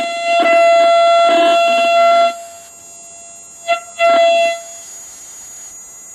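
German WW2 radiosonde signal received on a Fu.H.E.c receiver: a steady buzzy tone keyed on and off. A long tone of about two seconds is followed by quieter receiver hiss, then a short blip and a half-second tone a little after the middle.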